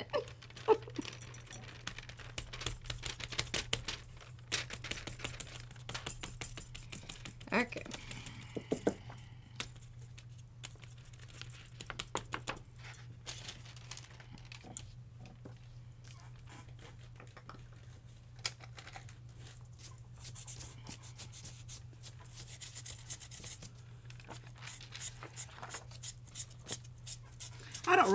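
Tabletop crafting handling: scattered small clicks, taps and paper rustles as a rubber stamp is pressed onto and lifted off kraft paper, with metal bangles and rings clinking against each other and the table. A steady low hum runs underneath.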